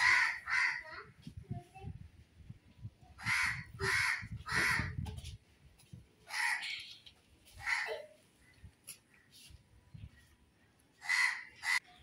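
Crows cawing repeatedly, short harsh caws mostly in twos and threes, about nine in all, with a pause of a few seconds before the last pair near the end.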